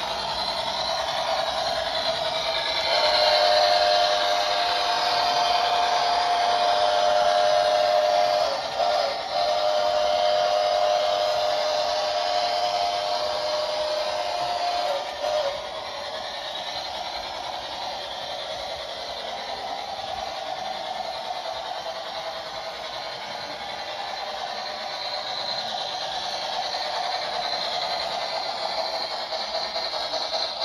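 Lionel Polar Express model train running on the layout track, with a steady hum of motors and wheels. Its locomotive's electronic whistle sounds two long two-note blasts, one straight after the other, in the first half.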